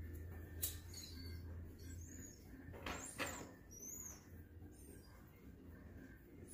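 Quiet lighting of a tobacco pipe: a lighter clicks about half a second in and a short soft hiss follows about halfway through, over a faint low hum. A few faint high bird chirps come and go.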